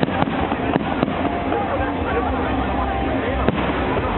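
Aerial fireworks shells bursting: a few sharp bangs in the first second and one more about three and a half seconds in, over a crowd chattering.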